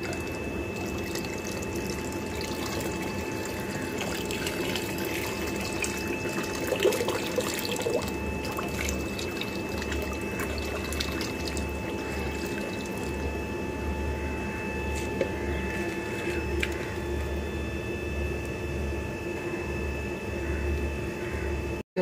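Yeast-and-water feed being poured from a plastic tub into a daphnia culture tank: a steady trickle and splash of liquid falling into water, over a faint steady hum.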